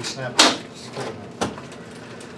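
Two sharp clicks about a second apart, the first the louder: the latches of a Go Power folding solar panel case snapping open as the case is unfastened.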